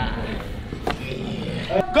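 Indistinct voices and room noise with a couple of faint knocks, ending in a loud shout of "Go!" right at the end.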